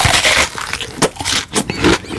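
Crunching and chewing of a bite of raw whole onion, with crisp crackles as it breaks between the teeth.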